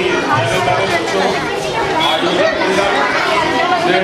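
A man speaking into a handheld microphone, with crowd chatter behind him.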